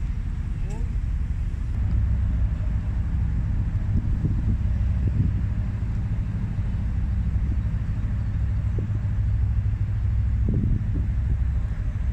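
Narrowboat diesel engine running steadily under way, a low continuous rumble.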